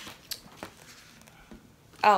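Faint handling noises over quiet room tone: a few light taps and rustles as a sheet of paper and supplies are picked up and moved on the desk.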